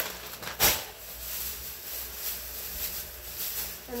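Handling noise as groceries are moved about: a sharp bump about half a second in, then steady rustling.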